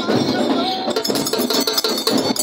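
Metallic jingling and clinking from costumed folk dancers' bells and sword, growing into a quick run of sharp clinks about a second in, over crowd voices.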